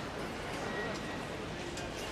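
Busy airport terminal hall ambience: a steady murmur with faint distant voices.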